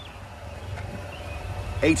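Quiet outdoor background: a low, steady rumble, with a man's voice starting near the end.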